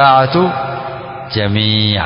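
A man's voice intoning a repeated phrase in long, level held notes, like chanted recitation rather than ordinary speech.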